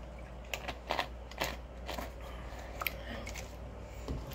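A plastic drink bottle being handled: a scattering of about eight small clicks and crackles over a low, steady room hum.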